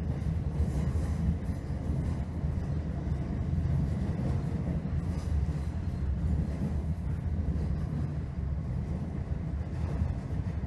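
Class 321 electric multiple unit running along the track, heard from inside the carriage: a steady low rumble of wheels and carriage.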